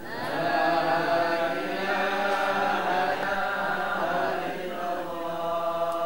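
Voices chanting an Islamic devotional recitation in long, held notes, swelling in loudly at the start.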